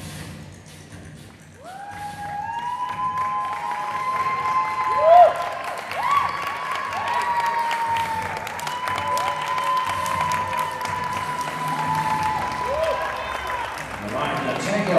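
Tango music playing over audience applause and cheering. Clapping runs throughout, and long held high notes come in about one and a half seconds in.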